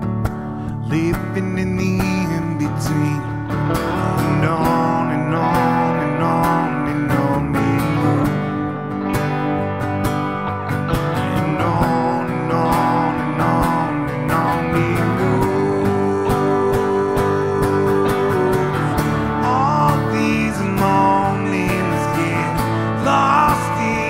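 Instrumental break in a live song: a strummed steel-string acoustic guitar carries steady chords while an electric guitar plays a lead melody over it, with notes bent upward near the end.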